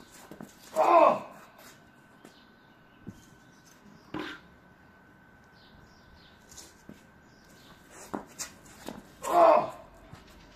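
A man's loud grunting shout of effort as a hammer thrower releases a 5 kg hammer, heard twice: about a second in and again near the end, each lasting about half a second.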